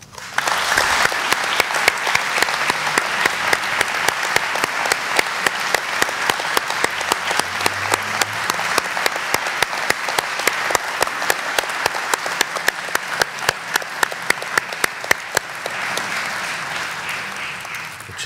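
Audience applauding: a dense, steady clapping of many hands that starts at once and dies away near the end.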